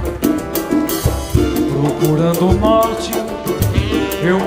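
A live Brazilian band playing: drums and percussion keep a quick, steady beat under melodic instrument lines.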